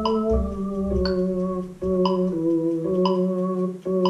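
Casio XW-G1 electronic keyboard playing a slow melody over held chords. The notes are sustained and change every half second to a second, each with a crisp attack.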